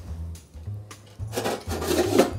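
Metal lid of a stainless steel stovetop smoker sliding shut with a scraping rub during the second half, over background music.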